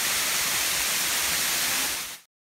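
A waterfall pouring over rock, heard as a steady, loud rush of falling water.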